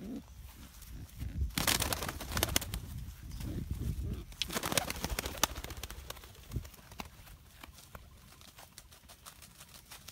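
A pigeon cooing softly a few times under loud rustling and crunching of footsteps in dry grass, which come in two spells, the first starting about a second and a half in.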